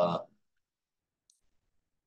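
A single faint computer mouse click about a second in, after a man's drawn-out 'uh'; otherwise near silence.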